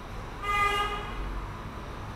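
A vehicle horn sounds once: a short, steady toot about half a second long.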